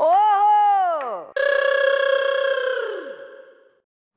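Exaggerated comic cries of shock: a drawn-out "oh" that rises and then falls in pitch, followed by a long, high held cry that slides down and fades near the end.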